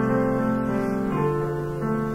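Slow keyboard music: held chords in low and middle registers, moving to a new chord every second or so.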